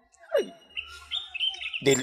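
Birds chirping in the background, a run of short high chirps, with one brief falling-pitched sound about half a second in.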